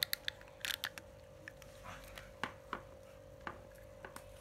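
Scattered light clicks and knocks of a plastic-bodied spinning reel being handled and turned over in the hand, irregular rather than rhythmic, with a faint steady hum underneath.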